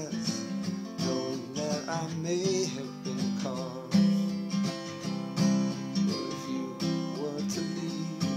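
Acoustic guitar strummed in slow chords, a strong stroke about every second, with a few wavering sung notes between the strums.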